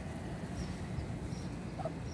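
Faint, short, high peeps from Muscovy ducklings, coming about once or twice a second over a low steady rumble.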